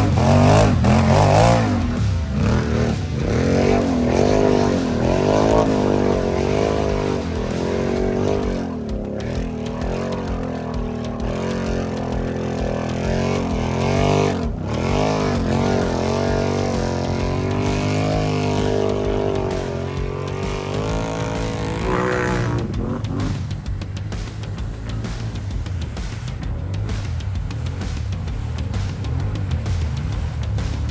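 Lifted ATV engine revved up and down again and again as it churns through a deep mud hole. About three-quarters of the way in, the rising and falling revs give way to a steadier, lower engine note.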